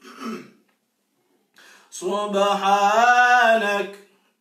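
A man's brief throat clearing, then after a pause a male reciter sings one long, melodic phrase of Quranic recitation (tilawa) in the second half, its pitch wavering and rising in the middle of the phrase.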